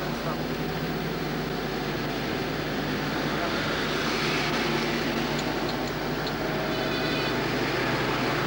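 Steady rushing noise of a car driving in traffic, heard from inside the car, over a low electrical hum on the recording.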